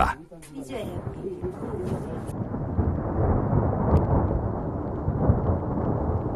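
Thunder: a long, low rolling rumble that swells in about a second in and rolls on steadily.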